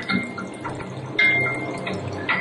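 Water rushing and splashing as it is released in a flood over a scale-model landscape in a laboratory flume, getting louder a little past the middle. It is heard as a documentary soundtrack played over loudspeakers in a room.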